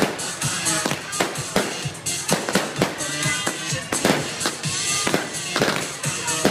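Fireworks going off in a rapid run of sharp bangs and crackles, several a second.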